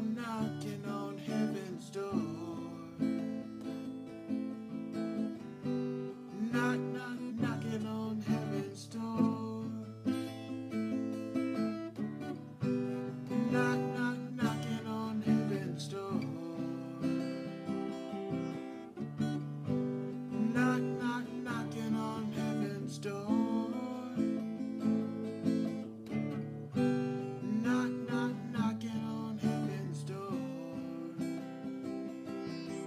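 Steel-string acoustic guitar strummed in a steady, even rhythm, with a man singing along over the chords.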